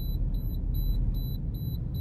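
CNG kit low-gas warning beeping in a car, a short high beep repeating about two and a half times a second, a sign that the CNG tank is nearly empty. Low engine and road rumble of the moving car underneath.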